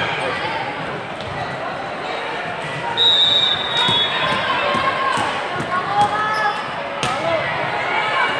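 Volleyball hall ambience: many overlapping voices from players and spectators. A referee's whistle sounds once, briefly, about three seconds in. Several sharp thuds of volleyballs being hit or bounced follow, the loudest about six seconds in.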